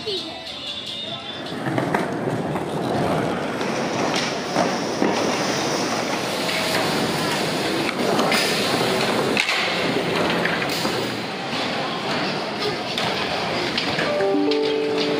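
Busy skatepark: a crowd of people chattering, with skateboard wheels rolling on concrete and several sharp board clacks. The noise swells up a second or two in and then holds loud.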